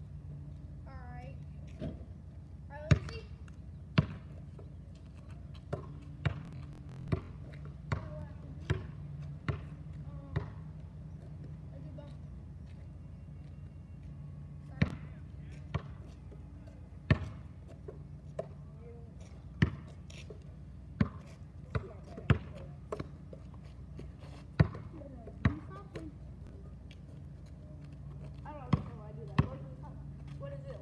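A basketball bouncing on an asphalt street: sharp single bounces, in runs about a second apart with pauses between them. A steady low hum runs underneath.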